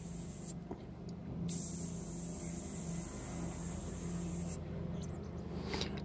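Airbrush hissing as it sprays, stopping about half a second in, starting again after about a second, and stopping once more a little over a second before the end.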